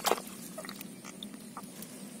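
A single sharp splash of muddy water in a small hole holding a catfish, followed by a few faint wet clicks and squelches.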